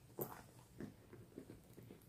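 Faint handling noises: a few soft taps and rustles as a leather wallet is set down on a fabric-covered table and a leather bag is handled.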